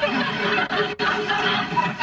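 Sitcom studio audience laughing after a joke.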